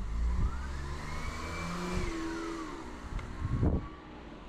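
A car passing on the street, with low engine tones and a whine that rises in pitch, holds and then falls away. A brief low thump comes near the end.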